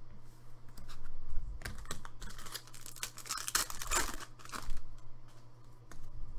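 Hands handling chrome trading cards, which rustle and crinkle in several short bursts as they slide against each other, over a steady low hum.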